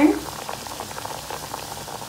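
Pieces of sweet mathri dough deep-frying in hot oil in a steel kadhai on a low flame: a steady sizzle of small bubbles with many fine crackles.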